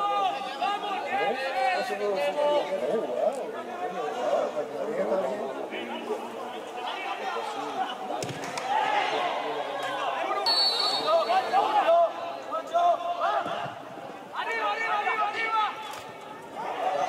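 Voices of players and spectators calling, shouting and chattering at a football match, with no words made out.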